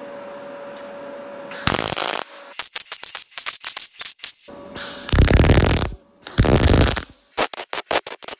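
MIG welder tack-welding steel washers onto conduit: a run of short bursts of crackling, with the longest and loudest bursts about five and six and a half seconds in. A steady hum fills the first second and a half before the welding starts.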